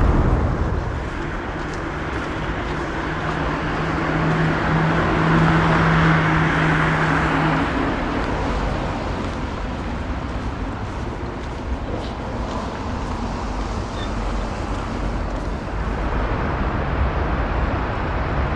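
Street traffic noise from passing cars, with a steady low engine hum through the first seven seconds or so as a vehicle swells past, loudest about six seconds in.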